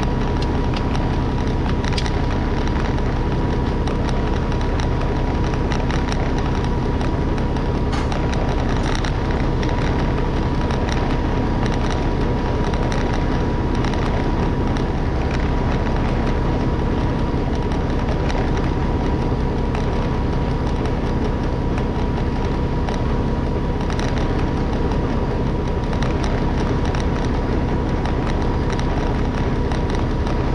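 Semi-truck diesel engine idling steadily, heard close up from behind the cab, with a thin steady whine above it and a few light clicks.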